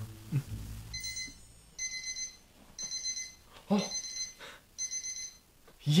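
Electronic alarm beeping: five half-second high-pitched beeps, about one a second, starting about a second in. The alarm works as a reminder that a TV show is about to start.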